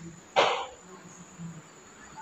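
A person makes one short breathy vocal sound, a quick breath or cough, about half a second in. After it there is faint room tone with a thin, steady high-pitched whine.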